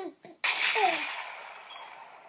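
A sneeze: a sudden breathy burst about half a second in, with a short falling voiced note, then fading out gradually.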